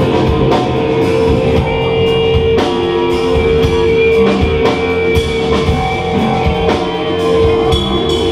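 Live band playing oriental rock, with drum kit hits and electric guitar under one long held note.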